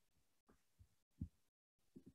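Near silence with a few faint, brief low thumps, the most distinct about a second in.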